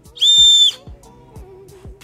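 The functional whistle built into the heel of a Salehe Bembury x New Balance 574 Yurt sneaker, blown once: a single steady, high-pitched blast lasting about half a second, shortly after the start.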